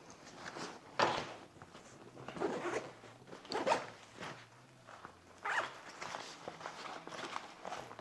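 Zipper on an Evergoods CHZ26 ballistic-nylon backpack being pulled in several short strokes as the bag and an inner pocket are opened, with the nylon fabric rustling under the hands.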